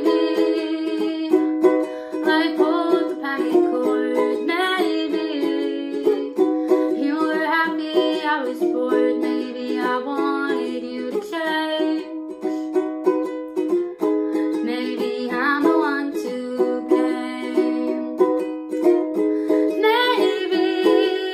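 Ukulele strummed in a steady rhythm of chords, in a small room.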